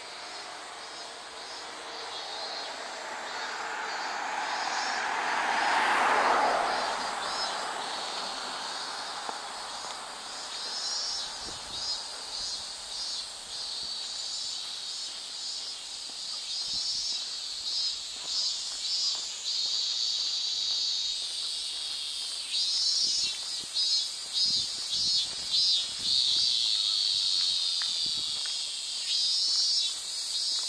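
Cicadas buzzing in the trees: a steady, high-pitched, pulsing chorus that grows louder in the second half. A vehicle passes on the road about six seconds in, swelling and then fading away.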